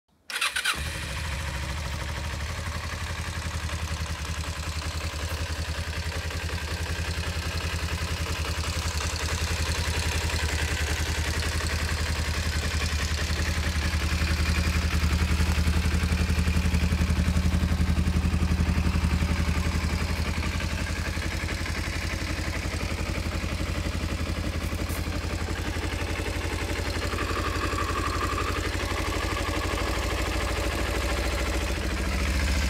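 Kawasaki KLE 250 motorcycle engine starting almost at once and settling into a steady idle. It is louder in the middle stretch, where it is heard close to the exhaust silencer.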